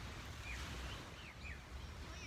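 Outdoor ambience: a few faint, short downward-sweeping bird chirps, over a steady low rumble of wind on the microphone.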